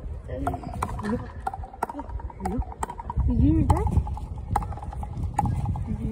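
A man's voice carried at a distance across an open stone-walled ball court, to show how speech travels there without amplification. Scattered sharp cracks are heard among it.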